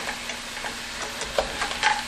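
Frozen broccoli sizzling steadily in hot olive oil in a frying pan, with a few light clicks and scrapes of a spatula against the pan in the second half as the broccoli is scooped from underneath and flipped.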